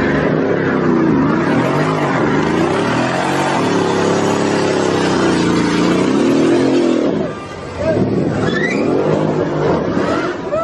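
Car engine revving hard, its pitch rising and falling, as the car does a burnout with its rear tyres spinning and smoking. The revs drop briefly about seven and a half seconds in, and voices come in near the end.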